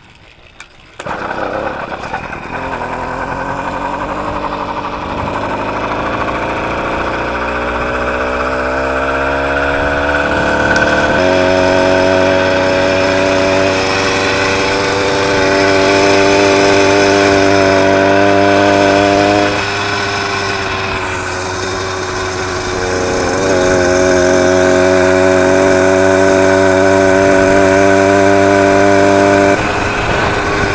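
80cc two-stroke motorized-bicycle kit engine coming in suddenly about a second in, its pitch climbing over the next several seconds as the bike gathers speed, then holding a steady buzz. It eases off around twenty seconds in, picks up again a few seconds later, and drops away near the end.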